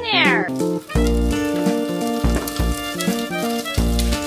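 Upbeat background music with a steady bass beat. Right at the start a toddler gives one high, falling, cat-like whine about half a second long.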